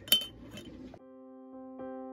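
A metal spoon clinks sharply once against a glass mason jar, then stirs a liquid inside it. About halfway through, the sound cuts to soft piano music.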